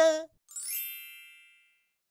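A single bright chime, a sound-effect ding, rings out about half a second in and fades away over about a second. Just before it, a voice finishes a spoken line.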